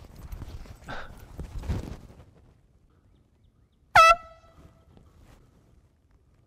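A handheld air horn gives one short, loud blast about four seconds in.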